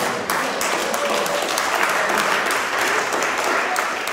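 An audience in a room applauding: many hands clapping together at a steady level.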